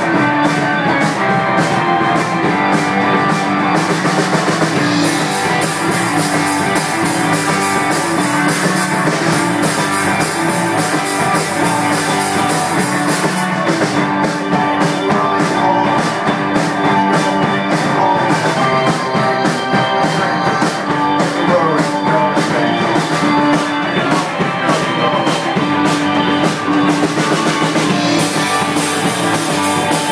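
A rock band playing live: electric guitar, electric bass, keyboard and drum kit, loud and steady, with the cymbals thickening about five seconds in and thinning out about halfway through. Recorded on a phone's microphone.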